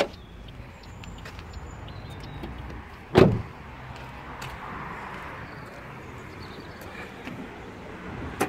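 Peugeot 108's bonnet release pulled with a click, then about three seconds in a single loud thump as the car door shuts, over a steady outdoor noise background.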